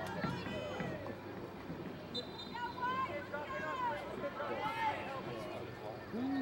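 Distant voices calling and shouting across an outdoor soccer field, several drawn-out calls from players and onlookers overlapping, with no one voice close.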